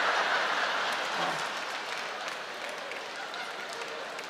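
Theatre audience applauding, loudest at first and slowly dying away.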